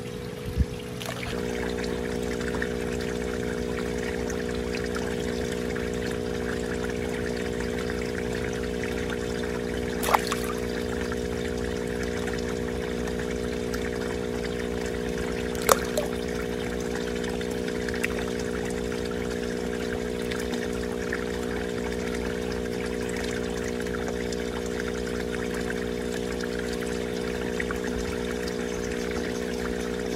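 Water pouring and trickling into a backyard fish pond, over a steady hum of several held low tones. A few faint knocks come about ten and sixteen seconds in.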